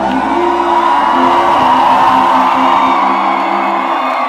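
Live pop band with acoustic and electric guitars holding a chord while a large crowd screams and cheers.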